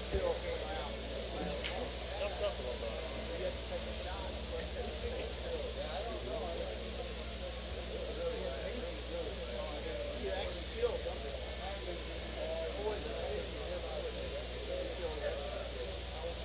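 Indistinct chatter of people in a pool hall over a steady low hum, with a few sharp clicks, the sharpest about eleven seconds in.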